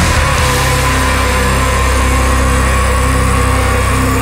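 Death metal recording: heavily distorted guitars and bass ring on a long, sustained low chord, with little drumming after about half a second in.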